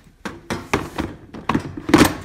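Recaro Privia infant car seat being set down onto its ISOFIX base: a quick series of hard plastic knocks and clunks, the loudest right at the end as the seat locks onto the base.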